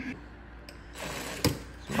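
Cordless DeWalt driver running briefly to back out a speaker's mounting screw, starting about a second in, with one sharp click partway through.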